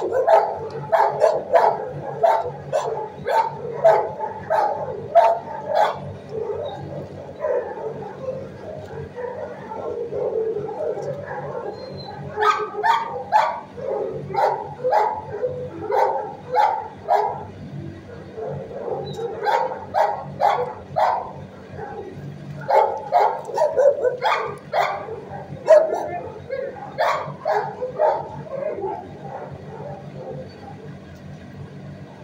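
Shelter dogs barking repeatedly in runs of quick barks, two or three a second, with short pauses between runs, over a steady low hum.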